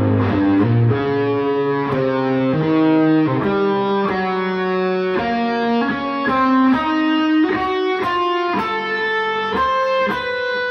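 Electric guitar playing a line of single held notes, about two a second, climbing and falling in pitch.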